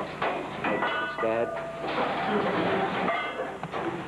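Indistinct voices of several people talking and calling out, with no clear words.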